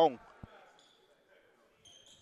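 One basketball bounce on a hardwood gym floor, a single low thud about half a second in, over quiet gym ambience.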